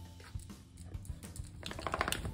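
Light, irregular clicking of a dog's claws on a tiled floor over quiet background music, with a louder burst of rapid scratchy ticking near the end.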